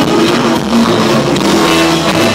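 Live rock band playing loudly: electric guitars and drums with a saxophone, recorded on a phone from the audience.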